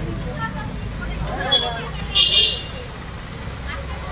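Street background: a steady low rumble of traffic engines with people's voices, and one short, sharp hiss a little over two seconds in.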